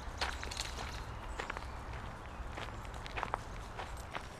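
Footsteps walking on a dirt and gravel trail: a run of soft, irregular steps over a steady low rumble.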